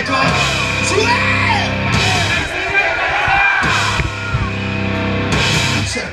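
Live rock trio playing loud distorted guitar, bass and drums, with voices yelling over the music.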